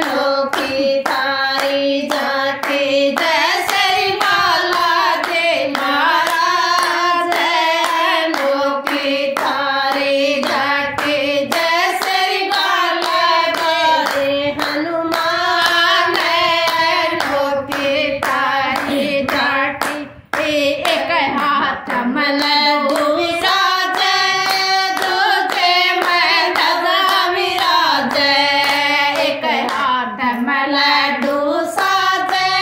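A group of women singing a Hindu devotional bhajan in unison, keeping time with steady rhythmic hand-clapping, with no instruments. The singing and clapping break off for a moment about two-thirds of the way through, then carry on.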